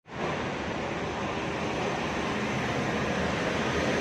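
Steady, even street noise: road traffic and wind on the microphone.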